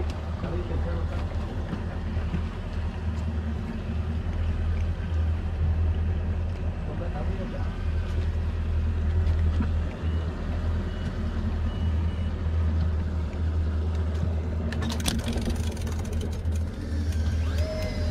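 Steady low rumble of the fishing boat's engine idling, with wind noise. Near the end a steady whine starts: the electric reel's motor winding line.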